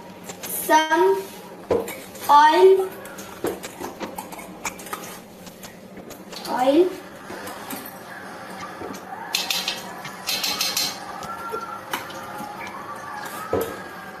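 Pots, pans and cutlery clinking and knocking as they are handled while cooking at a gas stove, with a few short snatches of voice. A brief hiss comes about nine seconds in.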